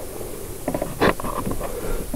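A short, soft laugh and a sharp click about halfway through, over a steady room hiss.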